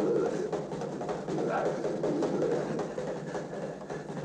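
Jumbled cartoon voices with no clear words, a dense steady babble on an old animated film's soundtrack.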